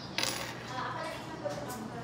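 A single short, sharp clink of a small hard object knocking on a hard surface, about a quarter of a second in, followed by faint room noise.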